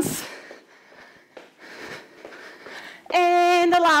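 A woman breathing hard from exercise: a sharp, breathy exhale at the start, then quieter breaths, before her voice comes back near the end.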